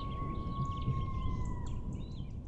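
Closing logo sound design fading out: a low rumble dying away under one held high tone that dips slightly near the end, with scattered bird chirps.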